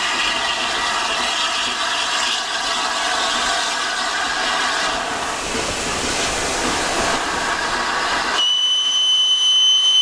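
LNER A3 Flying Scotsman steam locomotive passing with its train: a steady hiss of steam with rail noise. About eight and a half seconds in, a shrill, single-pitched steam whistle takes over and sounds until it cuts off at the end.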